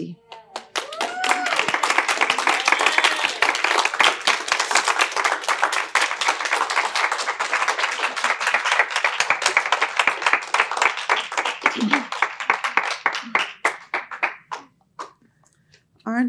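Small audience clapping for about fourteen seconds, with a few voices calling out in the first seconds. The clapping thins out and dies away near the end.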